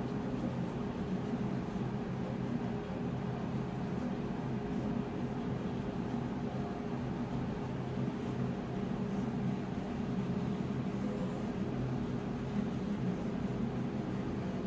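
A steady low hum with hiss, under faint rubbing of a small 3D-printed plastic part being sanded by hand on sandpaper.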